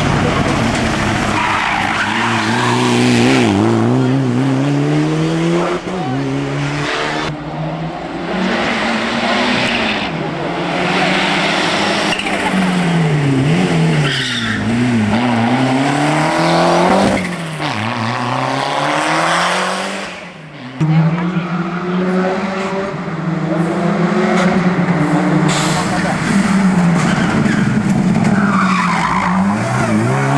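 Several rally cars' engines revving hard in turn as they power up a hill-climb course, pitch climbing then dropping at each gear change or lift, with tyres squealing at times in the corners. The sound cuts out briefly about two-thirds of the way through, then comes back suddenly at full volume.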